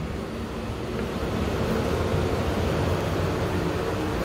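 Steady low rumble and hum inside a stationary airport train car standing with its doors open, with a faint steady tone over it.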